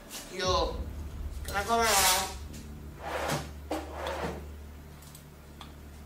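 Voices speaking indistinctly in a small room, with a clatter like a drawer or cupboard being opened or shut, over a steady low hum.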